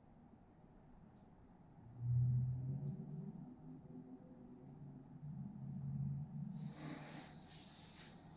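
A man's low, strained vocal sound while flexing, starting sharply about two seconds in and held in stretches for several seconds, then a few loud breaths near the end.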